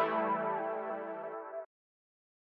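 A lo-fi keyboard chord, processed through the Waves Lofi Space plugin, rings and slowly fades. About three-quarters of the way through, the playback stops dead and leaves total silence.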